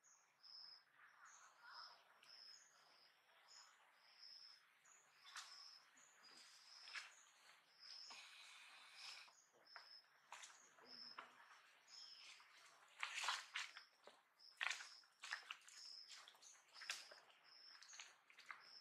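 A bird's faint, high chirp repeated steadily about twice a second, with scattered soft clicks and rustles, the loudest about thirteen seconds in.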